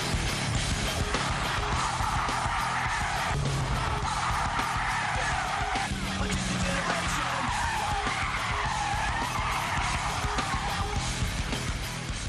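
A car braking hard from about 160 km/h in an emergency stop, its tyres skidding and squealing on the road surface, with background music underneath.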